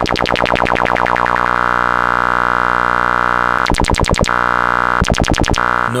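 A buzzy modular-synthesizer tone with its filter wobbled fast by the Erica Synths Black LFO. The wobble dies away over about a second and a half as the LFO's internal envelope decays, leaving a steady held filtered tone. Twice more, short bursts of the fast wobble return as gates retrigger the envelope.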